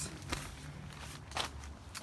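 Two soft rustles of movement inside a nylon tent, over a faint low hum.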